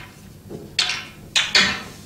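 Snooker cue tip striking the cue ball, followed by sharp clicks of the balls colliding: three sharp knocks in all within about a second, the last two close together.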